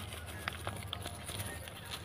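Small caladium tubers knocking and rustling against each other and a plastic pot as a hand rummages through them: faint, scattered light clicks.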